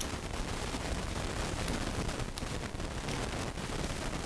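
Mouth sounds of chewing a mouthful of coconut-filled mooncake: soft, wet chewing with many small clicks.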